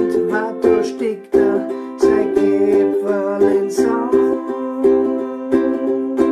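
Ukulele strumming chords in a steady rhythm, each chord re-struck roughly every half second to second.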